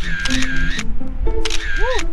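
Camera shutter sound effect, heard twice about a second and a half apart, each a short rattle of clicks, over background music.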